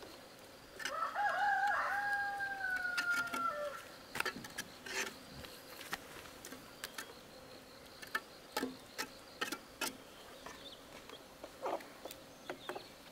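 A rooster crows once, a long call of about three seconds starting about a second in, wavering at first and then held with a slight fall at the end. Short scrapes and taps of a steel trowel smoothing wet cement run through the rest.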